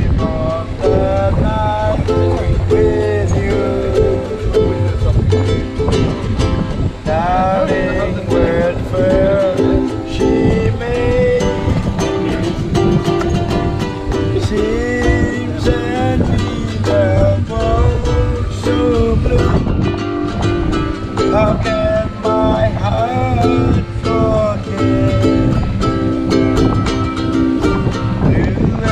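Ukulele strummed in chords with a man singing along in a rough voice.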